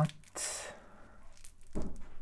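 A person's short, sharp breath just after a word ends, then a brief voiced sound near the end.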